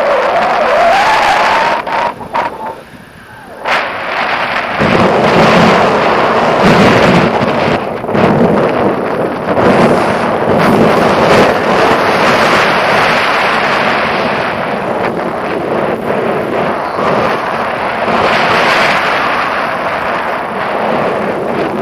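Airflow from a paraglider flight buffeting the microphone of a selfie-stick camera. It is loud and rumbling, with a brief lull about two to four seconds in.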